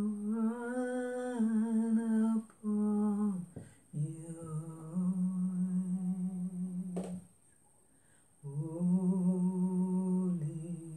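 One person humming a slow tune without words, in long held notes with a slight waver, pausing briefly twice and then for about a second before starting again. A single sharp click is heard about seven seconds in.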